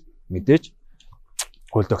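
A man speaking Mongolian in a studio discussion. He breaks off for about a second, and in the pause there is one sharp click.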